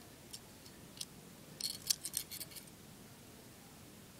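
Cold Steel Kudu folding knife being opened by hand: faint metallic clicks from the blade and lock, two single clicks and then a quick cluster around the middle.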